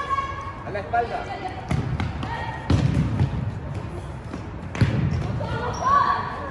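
Futsal ball being kicked and bouncing on a gym floor, a few sharp thuds about a second or two apart, echoing in the hall.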